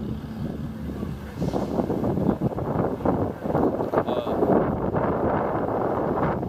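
Busy city street sound: traffic and wind buffeting the microphone, with indistinct voices mixed in.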